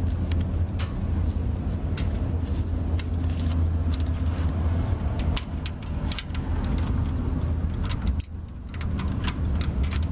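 Irregular metallic clicks and clinks of a socket wrench working a nut off a wire terminal on the starter. A steady low hum runs underneath and dips briefly about eight seconds in.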